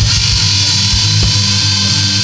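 Instrumental progressive death metal with no vocals: heavily distorted electric guitars over programmed drum-machine kick drums that hit in quick irregular clusters.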